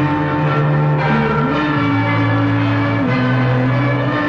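Church bells ringing over sustained orchestral music, with slow low notes that shift every second or two.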